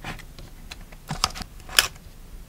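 Plastic-wrapped sticker packs and fingernails tapping and clicking against a cardboard sticker box as one pack is lifted from its compartment: a few sharp taps, the loudest near the end.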